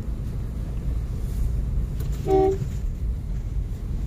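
Steady low rumble of a car heard from inside the cabin, with one short vehicle-horn toot a little over two seconds in.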